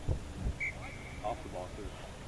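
Distant voices of players and spectators calling out across an open field, faint and broken up. There are a couple of brief low thumps on the microphone near the start.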